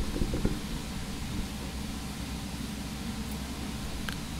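Steady low background hum with faint hiss, room tone with no distinct event, and a few faint low bumps in the first half second.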